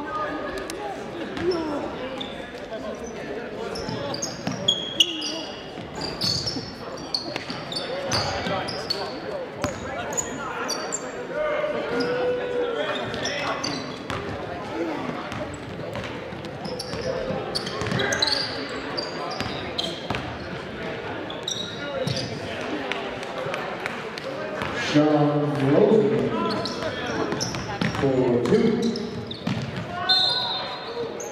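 Live basketball game in a gymnasium: a ball bouncing on the hardwood floor, short high sneaker squeaks, and players' and spectators' voices echoing in the hall. Louder shouting comes about 25 seconds in.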